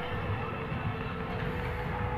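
Outdoor fairground background noise: a steady low rumble with a faint steady hum running through it.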